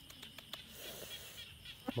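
Faint steady high chirring of night insects, with a few light clicks and rustles of dry leaves near the start and once near the end.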